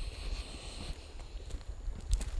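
Wind buffeting an outdoor microphone, a gusting low rumble, with a faint hiss that stops about a second in.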